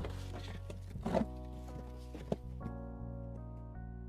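Background music of sustained chords, with a few knocks and rustles in the first half from cardboard and plastic packaging being handled, the sharpest knock about a second in.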